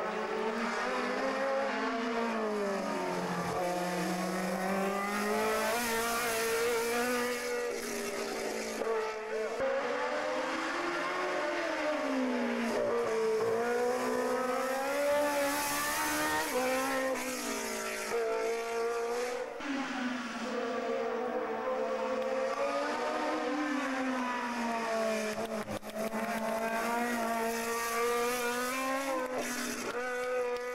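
Racing car engines revving hard on a hillclimb, pitch repeatedly climbing and dropping with gear changes and corners as the cars pass one after another.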